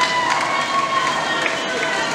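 Splashing from a group of water polo players sprint-swimming, under voices calling and shouting.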